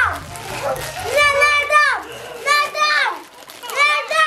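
Two young children squabbling and shrieking: three long, high-pitched cries about a second apart, each dropping in pitch at the end.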